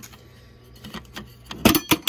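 Metal latch of a 50 cal ammo can being flipped open, giving a couple of sharp metal clacks near the end.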